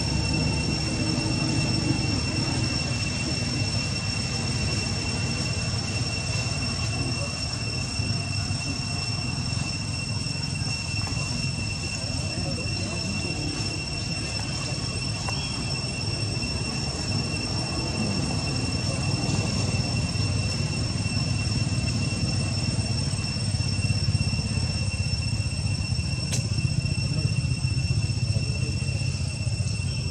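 Steady high-pitched insect drone, one unbroken tone, over a constant low rumble, with a single brief tick near the end.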